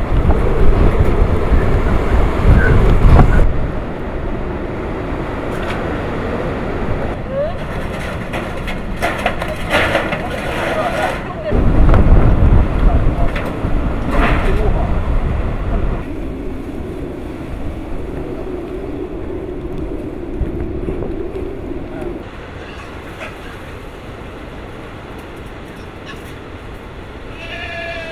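Typhoon-force wind gusting and buffeting the microphone, with heavy rumbling gusts in the first few seconds and again about twelve seconds in. Near the end a pig squeals briefly.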